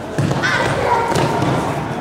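Irregular thuds from a group of karateka drilling in pairs on gym mats, with feet landing and strikes hitting padded mitts. Voices can be heard in the background, and the sound echoes in a large hall.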